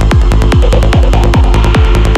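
Psytrance music: a kick drum about four times a second, each hit dropping in pitch, with a rolling bassline between the kicks, hi-hats on top and a synth line in the middle.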